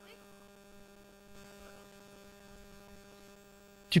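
Quiet, steady electrical hum in the recording, a low buzz with a few evenly spaced overtones that stays unchanged throughout.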